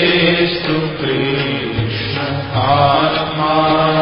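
A man chants a Sanskrit hymn of praise (stuti) to a melody, with musical accompaniment. Near the end his voice holds a long note that bends in pitch.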